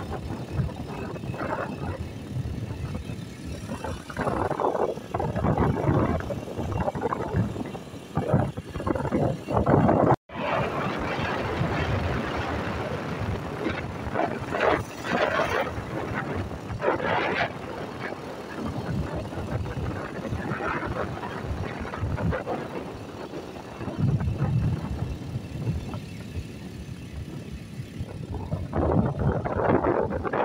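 Car driving on a wet road: engine and tyre noise that rises and falls unevenly, with a brief dropout about ten seconds in.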